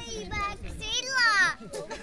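Young children's high voices talking and calling out, with one drawn-out, falling squeal about a second in.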